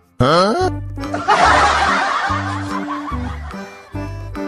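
Cheerful children's background music with a quick rising whistle-like sound effect at the start, followed by about two seconds of laughter.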